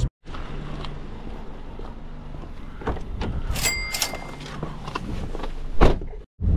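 Small handling knocks and clicks inside a parked car, with a single short electronic beep about halfway through and a louder thump just before the end.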